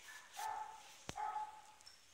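A dog whining: two short, high, steady whines, with a sharp click between them.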